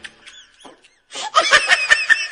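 Laughter that breaks out loudly about a second in, after a near-quiet moment.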